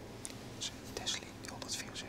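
Faint whispering: a few soft, hissing syllables spoken under the breath.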